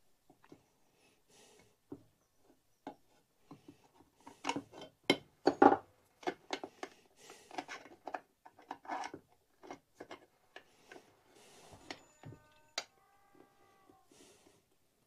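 Hands working on a Stihl 036 chainsaw's oil pump assembly: irregular small clicks, taps and rubbing of metal and plastic parts, busiest in the middle. A brief squeak comes near the end.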